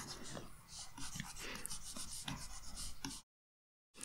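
Faint scratching and rubbing of a stylus drawn across a drawing tablet as brush strokes are painted, with small ticks. It cuts to dead silence for most of a second near the end.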